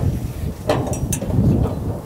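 Wind buffeting the microphone in an uneven low rumble, with a couple of short knocks a little before and after a second in as boots and hands meet the wheel loader's steel access ladder.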